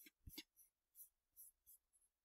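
Near silence with about half a dozen faint, scattered clicks from working a computer.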